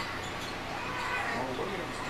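A televised basketball game playing faintly in the background: commentators' voices and court sounds.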